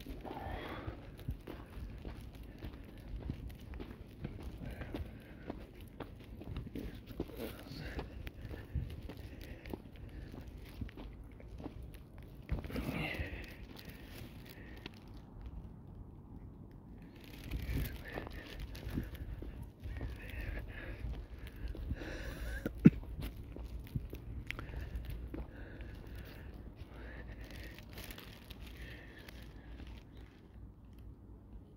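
Footsteps crunching on gravel and dirt, with faint distant voices now and then and one sharp click a little past the middle.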